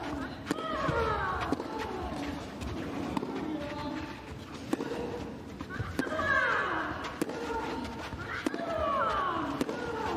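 Professional tennis rally on clay: sharp racket-on-ball strikes with players' loud grunting shrieks on their shots, each call falling in pitch. The loudest shrieks come in the second half.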